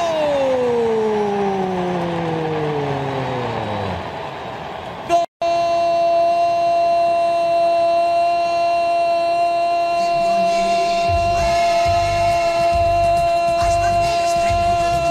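A radio station's goal jingle after a goal call: first a long drawn-out pitched sound sliding steadily down for about four seconds, then after a short break a steady, held horn-like tone, with music and a bass beat joining about two-thirds of the way through.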